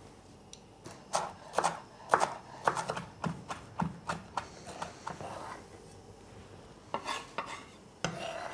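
Chef's knife chopping fresh coriander on a wooden cutting board: a run of quick, uneven knife strikes, about two a second. The strikes pause briefly and pick up again near the end.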